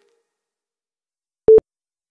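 Near silence, then one short electronic beep about one and a half seconds in: a workout interval timer's countdown beep, counting down the last seconds of a work interval before the rest break.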